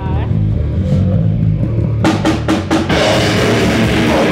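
Live death metal band starting a song: low, heavy guitar and bass ringing, then four quick drum and cymbal hits about two seconds in, and the full band with drums crashing in at about three seconds.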